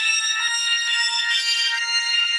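Synthesized organ from the Organito 2 plugin holding high, shrill sustained chords with no bass beneath, the chord changing about half a second in and again near the end.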